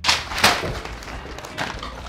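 A bundle of paper pages tossed onto a carpet-covered workbench, landing with a thump and a second hit about half a second later, then papers rustling as they are pressed flat.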